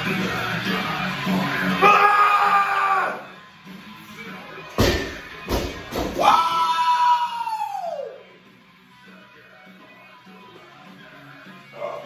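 Loud music with a shout of "let's go" in the first few seconds. About five seconds in, a 305 lb barbell with bumper plates is dropped and hits the floor with a loud impact and two quick bounces. A long yell that falls in pitch follows.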